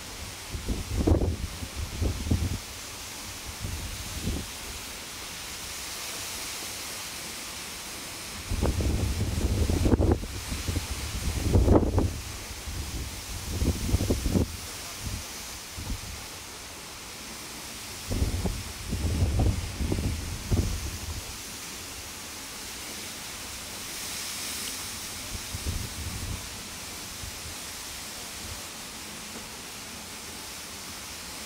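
Wind buffeting the microphone in irregular low gusts over a steady outdoor hiss.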